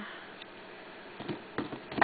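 A few light clicks and taps from pieces of a broken hollow chocolate bunny being handled, starting about a second in, with a sharper knock at the very end.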